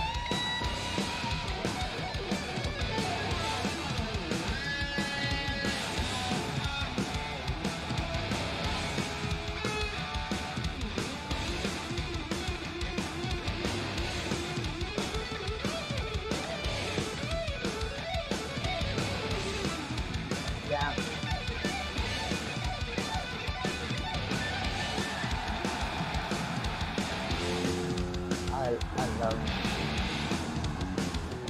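Live heavy metal band playing an instrumental intro, electric guitars and drums, heard as playback. Near the end a six-string electric bass plays a solo passage.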